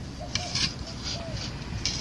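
Faint, indistinct voices over a steady low rumble of outdoor background noise, with a few brief soft hisses.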